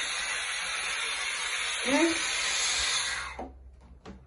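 Air hissing steadily out of a balloon through a soap-bottle cap into a homemade CD hovercraft; the hiss dies away about three and a half seconds in as the balloon empties.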